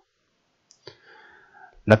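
Silence broken a little under a second in by one short mouth click, followed by a faint breath, before a man's voice starts speaking near the end.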